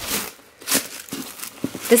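Tissue paper rustling and crinkling as it is pulled back inside a gift box, in two short bursts about a second apart.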